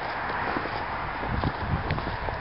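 Footsteps in snow as a person walks, irregular low thuds, over the steady background hum of a portable generator.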